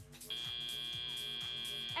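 FIRST Robotics Competition field's end-of-match buzzer sounding one steady, high electronic tone, starting about a third of a second in: the signal that the match time has run out.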